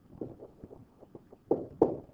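Pen strokes of handwriting on a whiteboard surface: a run of faint, short, irregular scratches and taps, with two sharper, louder taps about a second and a half in.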